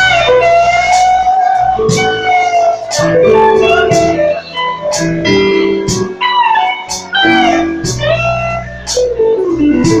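Live blues band playing: an electric guitar takes a solo of bent, gliding notes over bass guitar and drums keeping a steady beat.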